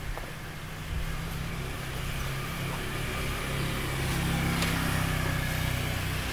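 Motorbike engine running steadily at low speed as the bike rolls along a street, heard from on the bike, with road and wind noise.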